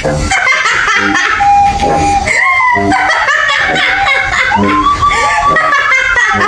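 A man's exaggerated, mocking voice, drawn-out notes sliding up and down in pitch, mixed with "ha, ha" laughs.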